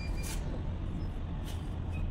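Steady low background rumble with a couple of faint clicks from the alternator rotor and parts being handled.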